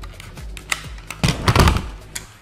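Hard plastic training prop guns being handled: a run of small clicks and knocks, then a louder clatter about a second and a quarter in as the pistol is set down and the rifle picked up.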